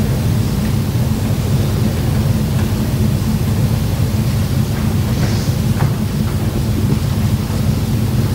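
Steady low rumble with a constant hum in the school hall's sound, unchanging throughout, with a couple of faint small clicks around the middle.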